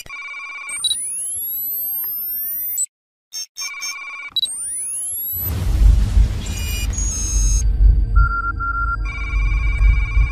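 Electronic sound effects for an animated logo intro: steady synthetic beeping tones and rising whistle-like sweeps, with a brief cut-out near three seconds. About halfway through a deep low rumble comes in under further beeps.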